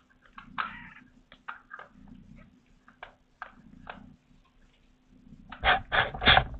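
Young kittens mewing in short, separate cries, with louder mews near the end.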